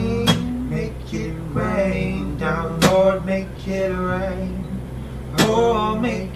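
Acoustic guitar strummed while a man sings a slow melody with long held notes, a sharp strum hitting about every two and a half seconds.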